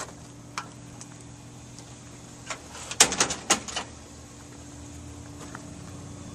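Aluminium screen-enclosure door swinging shut, with a cluster of sharp clacks and rattles about three seconds in, over a steady low hum.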